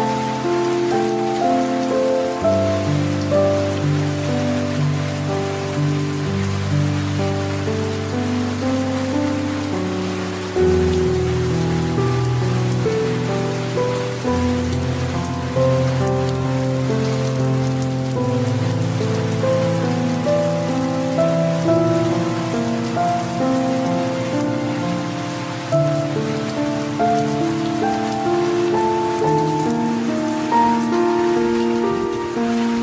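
Steady rain mixed with slow, soft music: held notes and chords over low bass notes that change every several seconds.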